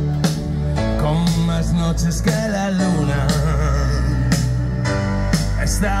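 Rock band playing live through a PA: drums with cymbal hits, a sustained bass line and electric guitar, with a melodic line over them. The vocal comes in near the end.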